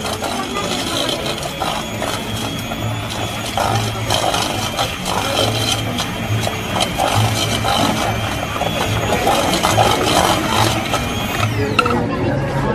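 Handheld electric mixer running with its beaters in a stainless steel bowl, a steady whine that cuts off shortly before the end.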